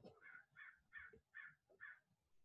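Faint bird calls: five short calls in an even series, a little under half a second apart, in an otherwise near-silent room.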